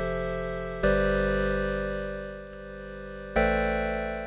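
SoundSpot Union software synthesizer playing a wavetable pluck-pad: sustained chords that start bright and fade slowly over a few seconds. A new chord comes in about a second in and another near the end.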